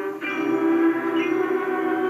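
Marching band brass holding a loud, sustained chord, coming in sharply about a quarter second in after a brief break.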